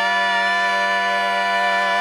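Barbershop quartet singing a cappella, four male voices holding one steady, ringing chord.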